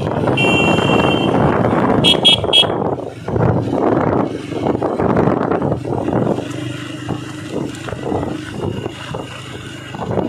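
A group of motorcycles riding together with their engines running. A horn sounds for almost a second about half a second in, then gives three quick honks around two seconds in.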